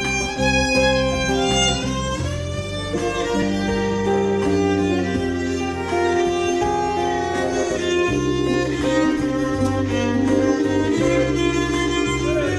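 Live band music: a violin carries a sustained melody over electric guitar and held bass and keyboard notes from a Kawai MP11 stage piano.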